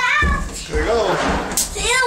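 A young boy's voice making a wordless, wavering sound that rises and falls in pitch, over a breathy rustle, with a short sharp click about one and a half seconds in.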